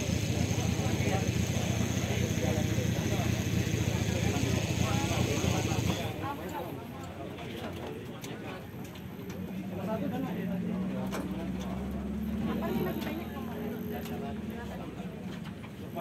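Off-road buggy's engine running steadily, then cutting out abruptly about six seconds in; a fainter hum follows.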